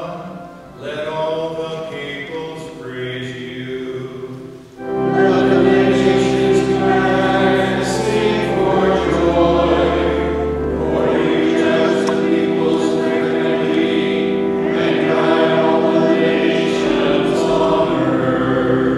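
Sung psalm in responsive form: a single voice sings a line, then about five seconds in the congregation comes in, much louder, singing over sustained chords and held low bass notes.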